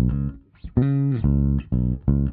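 Soloed recorded bass guitar track playing about four plucked notes, with the compressor switched out so the bass is heard dry and uncompressed.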